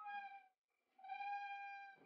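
Two long held notes on the same steady pitch, a reedy wind-instrument tone from the film score, the second starting about a second in.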